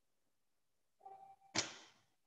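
Near silence, broken by one sudden short swish or knock about one and a half seconds in that fades quickly, just after a faint brief tone.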